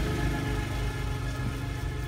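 A steady engine-like hum with a low rumble runs underneath, with faint scrubbing of a small brush inside a fuel-injection throttle body.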